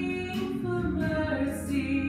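A woman singing a slow song into a handheld microphone, amplified over the room's sound system, holding long notes over instrumental accompaniment.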